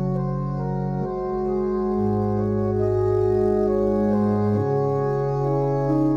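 Organ playing sustained chords, with the chord changing about one, two and four and a half seconds in: an instrumental interlude of the offertory hymn, with no voice.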